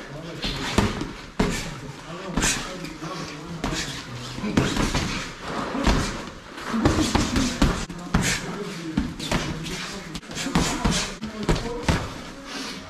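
Boxing gloves landing punches during sparring: irregular sharp smacks and thuds throughout, with voices in between.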